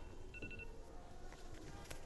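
Faint electronic phone ring: a short burst of rapid trilling tones about a third of a second in, over quiet room tone, with a single click near the end.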